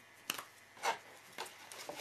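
Stiff scrapbook paper being handled and pressed into place by hand: four short, quiet crackles and taps, spread about half a second apart.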